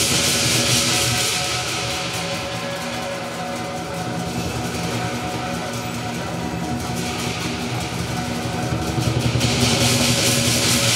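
Lion dance percussion band playing: a large drum with crash cymbals and ringing metal tones. The cymbal wash eases off in the middle and swells again near the end.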